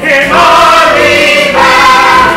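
A stage chorus of the cast, workhouse boys with an adult man among them, singing together over musical accompaniment in long held notes. The notes change once, about a second and a half in.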